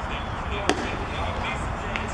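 Baseball pitch popping into the catcher's mitt: one sharp crack about two-thirds of a second in, over ballpark crowd chatter.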